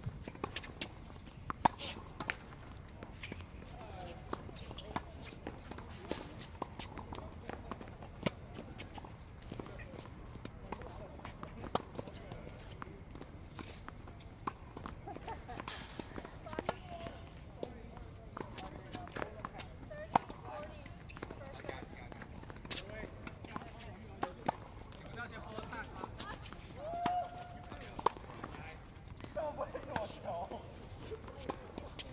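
Tennis balls struck with rackets and bouncing on a hard court during a rally: sharp pops at uneven intervals over a steady low hum.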